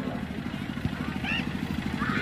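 An engine idling, a low, rapid, even pulsing, with faint voices in the background.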